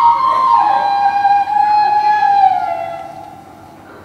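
Flute melody sliding down in steps to a long held low note that fades away near the end.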